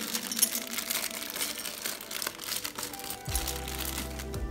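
Clear plastic bag crinkling and crackling as it is handled and pulled open, over background music whose bass line comes in near the end.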